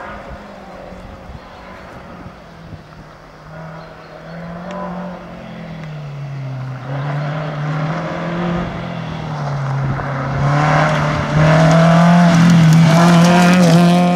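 Renault 5 rally car's four-cylinder engine approaching at speed, its note rising and falling with throttle and gear changes. It grows steadily louder and is loudest near the end as the car passes close.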